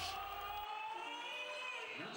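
Crowd noise in an indoor volleyball hall after a point, with a long held tone that rises a little and falls back over about two seconds.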